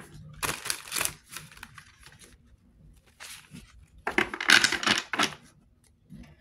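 A deck of tarot cards being shuffled by hand, in irregular bursts of card noise; the longest and loudest comes about four seconds in.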